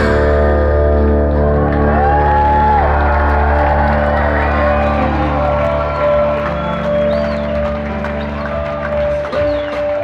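Live progressive metal band letting a held chord ring out in steady sustained notes after the heavy guitar playing stops, with one short bend about two seconds in. The crowd whoops and cheers over it, louder near the end.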